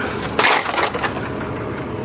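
Crushed LCD monitor's plastic housing cracking and crackling as it is bent by hand, with one loud crackle about half a second in.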